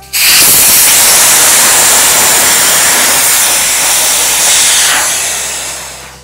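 Air rushing out of an inflatable paddleboard's valve as its pin is pressed to deflate the board: a loud, steady hiss that starts suddenly and tails off over the last second as the pressure drops.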